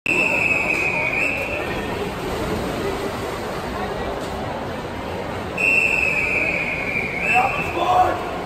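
Referee's whistle giving two long, steady blasts over crowd murmur in a pool hall. The first lasts about a second and a half and the second, about five and a half seconds in, lasts about two seconds. These are the long whistles that control a backstroke start, bringing the swimmers into the water and then to the wall.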